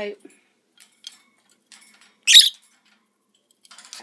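A lovebird gives one short, sharp, high-pitched squawk about two seconds in, during a squabble at the food bowl. A few faint clicks come before it.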